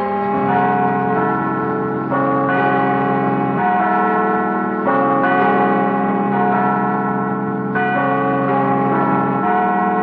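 Church bells pealing, many bells sounding together in a loud, continuous clangour whose mix of pitches shifts every second or so.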